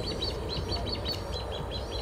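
A bird chirping: a fast run of short, high repeated notes, about six a second, over a low steady background hum.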